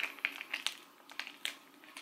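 Crinkling and crackling of a foil face-mask sachet being squeezed and handled in the fingers, a string of short irregular crackles.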